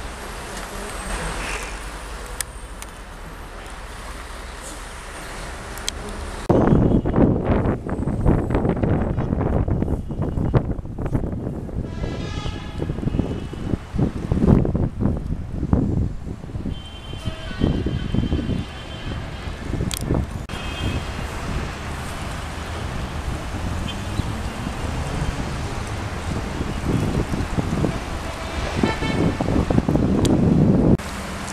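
Outdoor urban ambience: a steady wash of road traffic with occasional horn toots and distant voices. The sound jumps abruptly louder and rougher, heavy in the low end, about six and a half seconds in.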